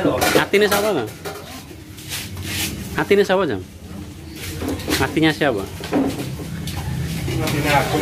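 A man's voice talking, between short clinks and knocks of metal cooking utensils against woks and pans, over a steady low hum.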